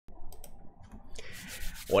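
Soft rubbing and rustling handling noise, with a few faint clicks in the first half second. A man's voice starts right at the end.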